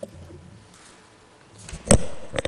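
Quiet room tone with a faint low murmur, then one sharp knock just before the end, the loudest sound.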